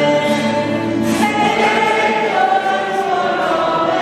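A congregation singing a hymn of praise together, many voices holding long sung notes.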